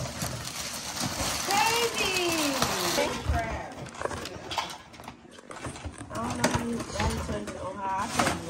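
Cardboard toy box and its packaging being handled and unpacked, with scattered knocks and rustles, under short wordless voice sounds.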